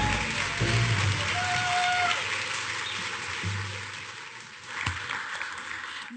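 Audience applause after a live band's song ends, with the band's final chord dying away at the start. The clapping fades steadily over several seconds.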